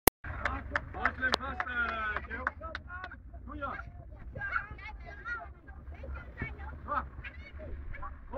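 Young children's voices calling and chattering, with a run of sharp knocks from footballs being kicked during the first three seconds.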